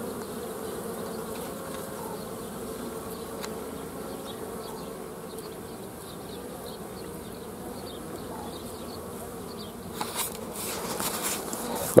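Honeybees buzzing as they fly around the hive entrance, a steady hum. Scratchy rustling noise joins in during the last two seconds.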